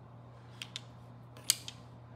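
Wooden soroban-style abacus beads clicking as fingers push them into place against the frame: four light clicks, the sharpest about one and a half seconds in.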